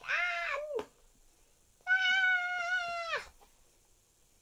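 A child's voice imitating a cat: two drawn-out, high meows, the second longer, each ending with a drop in pitch.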